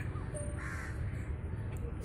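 Low outdoor background noise with a single short bird call about half a second in.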